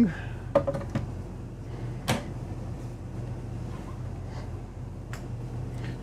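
Overhead RV cabinet doors being closed: a few light clicks, then one sharper knock about two seconds in and a faint tap later. The doors are soft-closing.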